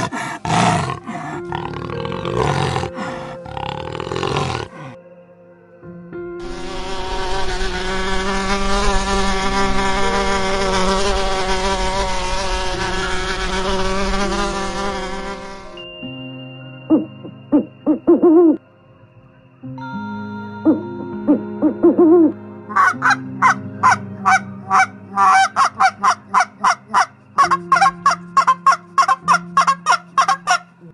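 A run of animal calls over soft background music. Strong calls at the start give way to a long, steady sound with many overtones, then a few short owl hoots. From about two-thirds of the way in come rapid, repeated honks from domestic geese.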